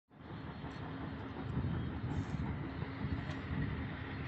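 Mahindra 12-wheel tipper truck's diesel engine labouring under a full overload on a mine ramp, a steady low rumble.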